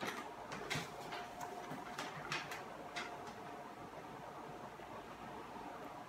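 A person biting into and chewing a raw rocoto pepper's thick flesh: a run of faint crunches and wet mouth clicks over the first three seconds, then quieter chewing.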